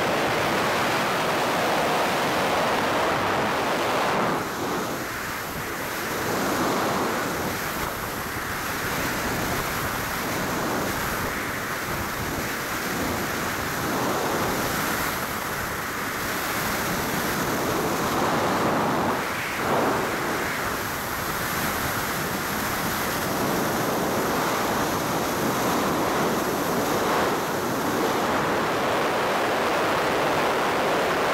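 Wind rushing over a body-mounted camera's microphone in wingsuit flight: a steady loud rush of air that dips and swells every few seconds, with a faint high whine above it.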